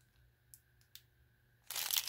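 A small plastic bag of beads crinkling as it is handled, starting near the end after a mostly quiet stretch with two faint ticks.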